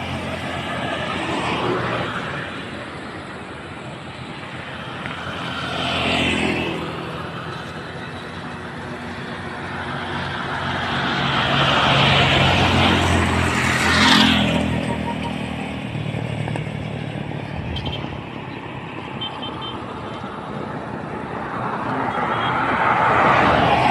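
Road traffic passing on a highway: cars and a motor scooter drive by one after another, each swelling and fading with engine and tyre noise. The loudest passes come about twelve to fourteen seconds in.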